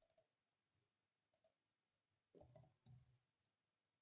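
Near silence with a few faint computer mouse clicks, the last ones coming in a quick cluster about two and a half seconds in.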